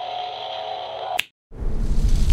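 Edited sound effects: a steady held tone is cut off by a sharp click just after a second in. A brief dead silence follows, then a loud, deep rumbling boom begins.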